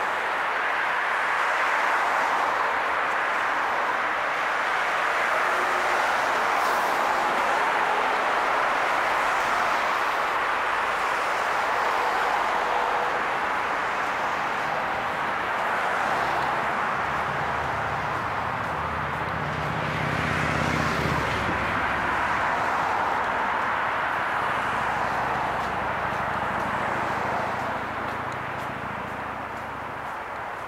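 Road traffic passing close by on a bridge roadway: a steady hiss of tyres from cars, with the engine drone of a heavy vehicle coming through from about halfway. The noise eases off near the end.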